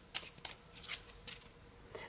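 A tarot deck being shuffled by hand: about five short, soft card slaps, roughly two a second.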